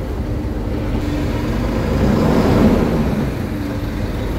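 Tata 916 bus's 3.3-litre four-cylinder diesel engine idling steadily, heard from the driver's cab, a low steady rumble that swells slightly a couple of seconds in.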